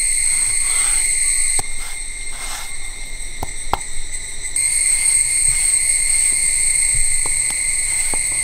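Insects buzzing steadily in a high, continuous drone that dips quieter about one and a half seconds in and swells back about four and a half seconds in. Faint scattered clicks from the stone roller and hands on the grinding stone.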